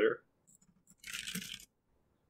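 Computer keyboard typing: a short, quick run of key clicks about a second in.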